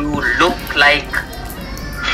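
A few short voice sounds without clear words, about a second long in all, over steady background music.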